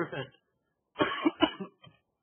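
A man coughing, a quick cluster of short coughs about a second in.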